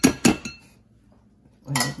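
Metal spoon clinking against a stainless wire-mesh sieve over a glass bowl while gram flour is sifted: a few quick clinks in the first half second, then quiet.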